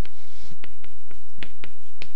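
Chalk writing on a blackboard: a light scratching stroke, then sharp chalk ticks in two quick pairs.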